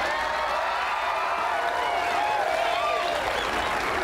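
Audience applauding steadily, with scattered voices mixed in.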